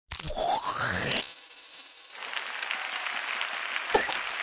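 Comic intro sound effects: a rising, whistle-like glide lasting about a second at the start, then a steady crackling crunch from about two seconds in, with a sharp click near the end.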